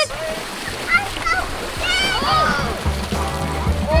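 A man swimming across a swimming pool, his arm strokes and kicks splashing the water steadily, with background music and short children's calls over it.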